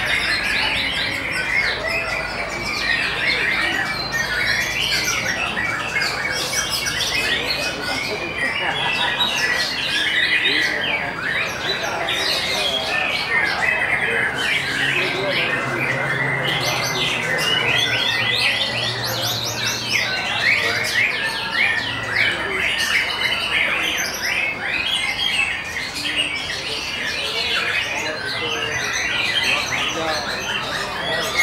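White-rumped shama song in a dense, continuous chorus of rapid chirps and whistles that does not pause.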